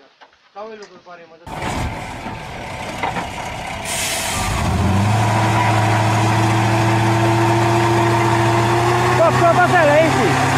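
Heavy six-wheeled logging truck's diesel engine running loud under load, starting abruptly about a second and a half in. A brief hiss of air comes about four seconds in, and from about five seconds the engine settles into a steady low drone.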